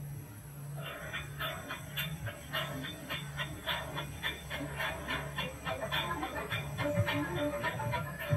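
Cartoon soundtrack playing from a tablet's speaker: music with a quick, even rhythm of short notes, about three to four a second, over a steady low hum.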